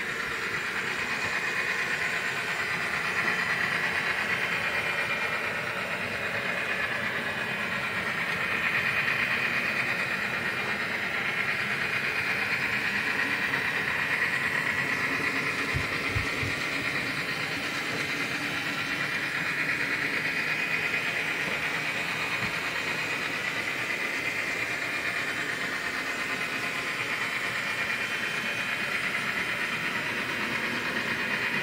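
N scale model train running on track: an Atlas GP39-RN diesel locomotive pulling passenger cars, with a steady whir from its small motor, gearing and wheels on the rails. The whir swells and fades gently as the train moves along, and a couple of brief low knocks come about halfway through.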